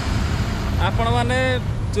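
Diesel engine of a goods truck running steadily as it drives past close by, with a man's voice over it about a second in.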